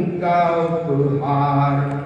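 A man singing Hindi verse in a slow, chant-like melody, holding two long notes with a short break between them.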